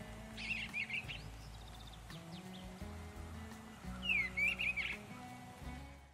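Quiet background music of low held notes, with bird chirps over it in two short bursts, about half a second in and again about four seconds in.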